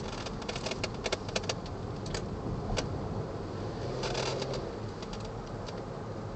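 Cabin noise inside a 2010 Ford Flex AWD Turbo on the move: steady engine and road noise. A run of light clicks and rattles comes in the first three seconds, and a brief louder whoosh about four seconds in.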